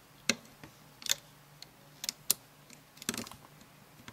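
A few sharp, scattered clicks of a loom hook tapping and catching on the clear plastic pins of a rubber-band loom as bands are hooked over them, roughly one a second.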